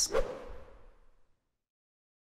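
A short whoosh transition effect that fades out within about a second, followed by dead silence.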